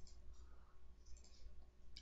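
Near silence: a faint steady low hum of room tone, with a faint click of a computer mouse just before the end as a menu is opened.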